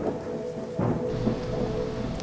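Background rain-and-thunder soundscape, steady rain with a low rumble, laid under steady held tones: the binaural-beat frequency track.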